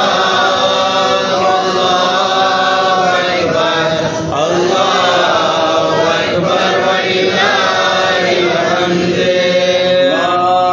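Devotional vocal chanting in long held notes that slide slowly up and down in pitch.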